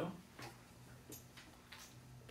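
A few faint, scattered clicks, about four in two seconds, over a low steady hum.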